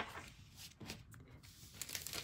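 Faint rustling of thin rice paper sheets being handled and gathered into a stack, with a sharp tick at the start and a few light ticks near the end.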